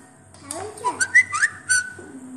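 Whistling: a few short notes that glide up and down and then hold high, with a few light clicks among them.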